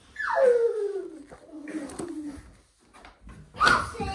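A small child's wordless voice: one long whine falling steadily in pitch over about two seconds, trailing off into softer sounds. A knock near the end, like something set down on the wooden table.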